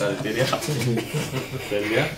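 A person talking: speech that the recogniser did not write down.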